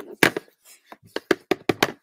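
A clear acrylic stamp block tapped repeatedly onto an ink pad to ink the stamp: a run of about eight short, sharp taps, coming faster in the second half.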